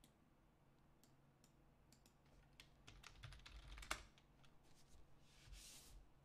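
Faint clicking and tapping on a computer keyboard, scattered at first and then a quick cluster of keystrokes about three to four seconds in, followed by a brief soft hiss near the end.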